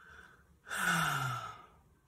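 A woman's voiced sigh, about a second long, falling in pitch, starting about half a second in.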